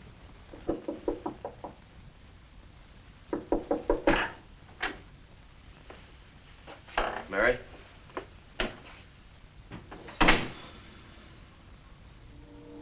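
Film sound effects of a man creeping into a room: quick runs of light knocks and footfalls, a door being opened, and one sharper thump about ten seconds in.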